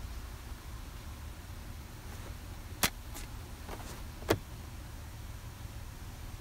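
A manual rear-door sunshade being unhooked and let back down into its slot in the door panel. There are two sharp clicks about a second and a half apart, with a couple of fainter ticks between them, over a low steady background hum.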